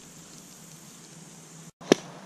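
Faint steady outdoor background hiss that drops out briefly, followed near the end by a single sharp knock.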